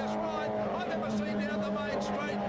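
Racing touring-car engines running at speed in an old race broadcast, with a commentator talking over them.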